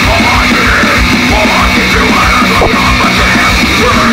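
Live thrash metal band playing loudly: distorted electric guitar and drum kit under shouted vocals.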